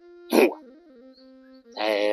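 Two loud animal calls over soft background music: a short, sharp one about a third of a second in, and a longer one with a wavering pitch near the end.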